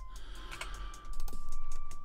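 Computer keyboard and mouse clicking: a few light clicks, then a quick dense run of key taps in the second half.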